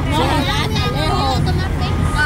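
Voices talking over a steady low engine rumble from a large truck.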